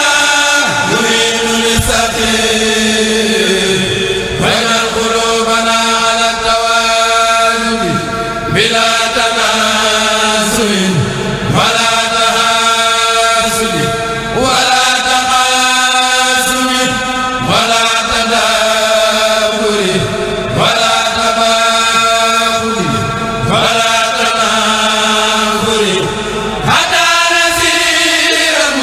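Group of men chanting a qasida (Mouride religious poem) in unison, unaccompanied, in long held phrases with short breaks between them.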